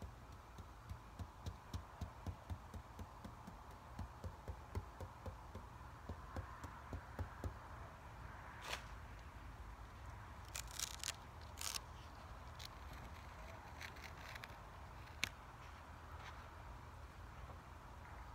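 Paintbrush stippling paint onto a stencil: soft, regular dabbing taps about three a second. From about halfway there are scattered crisp crackles and a single sharp click as the stiff stencil sheet is handled.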